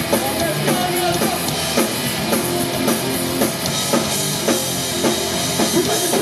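Live hardcore punk band playing loud: pounding drum kit under distorted electric guitar, recorded from the crowd.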